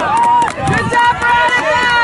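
Several spectators' voices shouting and cheering at once, overlapping calls and praise from the sideline.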